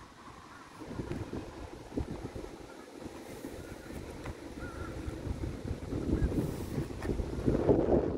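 Wind buffeting the phone's microphone: an uneven, gusty low rumble that grows stronger toward the end.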